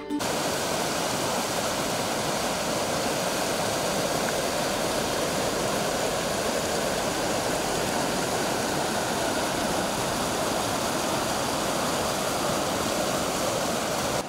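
A shallow river rushing over rocky ledges and small rapids, a steady even rush of water.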